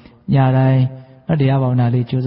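A man's voice reciting in long, drawn-out syllables in the chant-like intonation of a Buddhist monk's sermon, in two phrases with a short pause between them.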